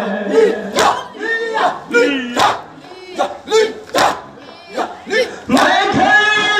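A group of male mourners calling out together between lines of a noha, with sharp chest-beating (matam) strikes about every second and a half. The reciter's sung line comes back in near the end.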